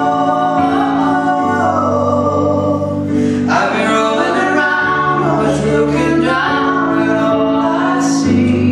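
A woman singing a slow ballad with grand piano accompaniment, holding long notes that bend between pitches over sustained piano chords.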